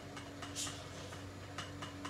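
Light, irregular clicks and ticks of a coffee scoop stirring grounds and water inside a plastic AeroPress chamber, tapping against its walls.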